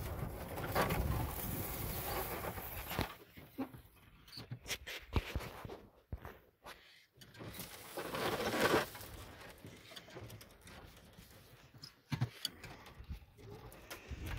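Rushing noise from a moving electric golf cart and wind on the microphone, loudest in the first three seconds and again around eight seconds, with scattered knocks and clicks in between.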